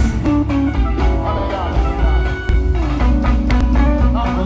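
Pagode baiano band music played loudly, with a heavy bass, percussion hits and a guitar line, and no clear singing.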